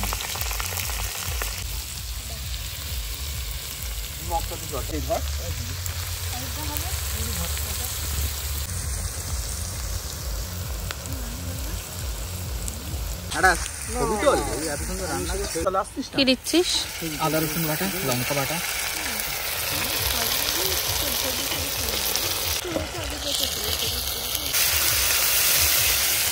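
Sliced onions frying in oil in a steel kadai over a gas burner, a steady sizzle. About halfway through the sound changes as a thicker onion-and-tomato masala fries in the pan.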